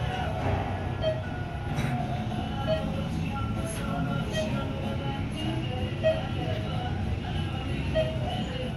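Thyssenkrupp traction elevator cab riding up with a steady low rumble, while background music plays.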